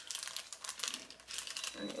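Clear plastic packaging crinkling as a bag holding a pair of infant shoes is handled and turned over in the hands: a quick run of crackles and rustles.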